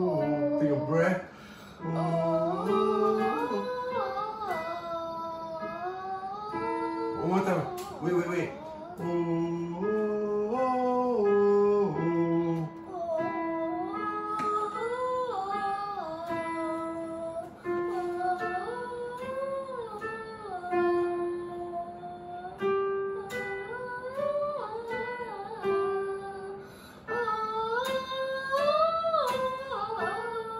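A young girl singing an 'oh' vocal warm-up, short stepwise phrases going up and down, with an electronic keyboard playing the notes along with her. There are brief breaks for breath between phrases, and lower notes sound under the melody for the first dozen seconds.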